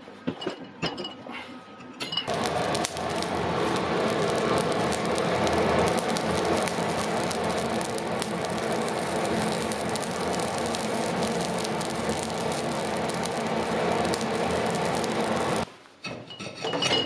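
Coal forge fire burning hard with a steady rush and constant crackling, heating drawn tombac wire to anneal it between passes through the draw plate. It cuts in abruptly about two seconds in, after a few short clicks of the wire and pliers at the steel draw plate, and stops abruptly just before the end.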